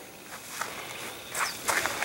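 Footsteps on gravel: a few soft crunches, coming closer together and louder near the end.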